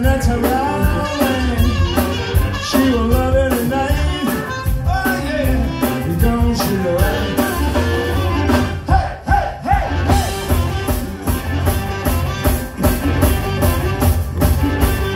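Live blues-rock band: an amplified harmonica, played cupped against a handheld microphone, leads with bending notes over electric guitars, bass guitar and drums.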